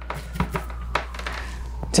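Solder being melted onto a circuit-board pad with a soldering iron: scattered small clicks and crackles, irregular and short, over a steady low hum.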